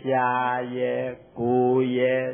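A Buddhist monk's voice intoning in a drawn-out, chant-like way, in two long held phrases with a short break about a second in.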